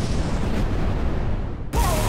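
Rumbling whoosh sound effect of a video transition, cutting off abruptly near the end, where music starts.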